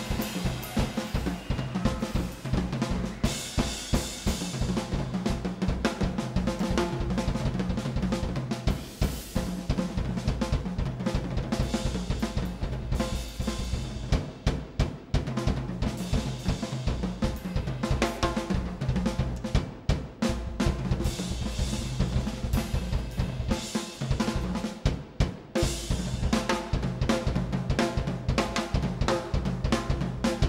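Pearl jazz drum kit played fast and hard in a drum feature: a dense stream of snare, bass drum, tom and cymbal strokes with no letup.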